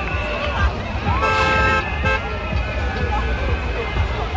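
A vehicle horn gives one steady blast of about a second, starting just over a second in, over the chatter and shouts of a crowd and the heavy bass of loud music.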